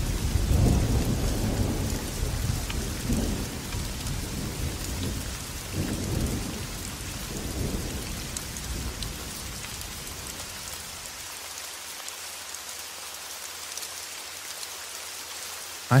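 Light thunderstorm: steady rain with low rumbles of thunder that roll on through the first several seconds, then die away, leaving only the rain.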